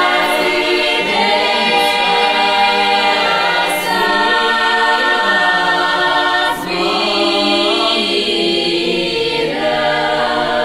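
Bulgarian women's folk choir singing a cappella in close, held chords, with short breaks between phrases about four and six and a half seconds in.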